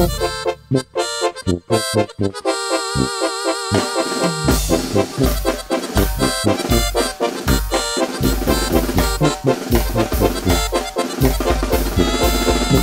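Instrumental introduction of a duranguense corrido played by a banda: short clipped ensemble hits at first, then a few held, wavering lead notes, then a steady pounding bass-drum beat under the melody from about four and a half seconds in.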